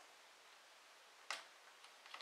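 A single sharp click about a second in, then a fainter tick, as a wooden toothpick is set down on the board and the next one is picked from the pile; otherwise near silence.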